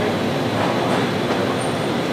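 A steady rushing noise with no clear pitch, holding an even level throughout.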